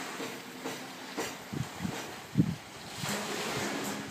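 Small waves washing onto a sandy beach, with wind on the microphone and a few brief low thumps, the loudest about two and a half seconds in.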